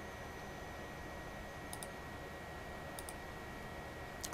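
Two faint computer mouse clicks, a little over a second apart, over a low steady hiss with a thin high whine.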